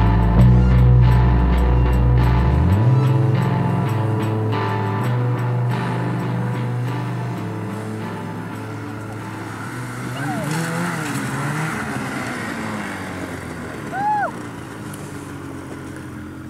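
Rock soundtrack music, fading out over the first half, gives way to snowmobile engines running and revving. A short rising-and-falling voice call comes about two seconds before the end.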